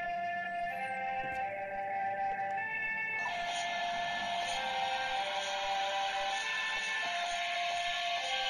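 Electronic music playing from the Oreo DJ Mixer, the cookie-reading toy turntable: a melody of held notes stepping from pitch to pitch, with a noisier beat layer coming in about three seconds in.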